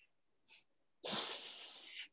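A person's breath: a short airy hiss about half a second in, then a breathy exhale lasting about a second.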